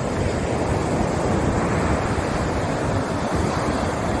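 Sea surf breaking and washing up a sandy beach, a steady rush of waves, with wind rumbling on the microphone.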